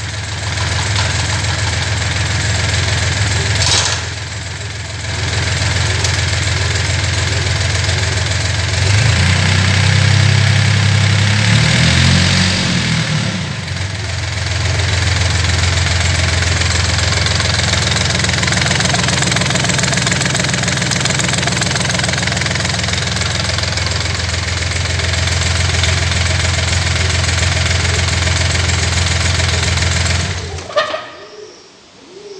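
Yanmar D36 diesel outboard motor running on a test stand with its propeller turning in open air. It runs steadily, dips briefly about four seconds in, then revs up around nine seconds and settles back down by about fourteen seconds.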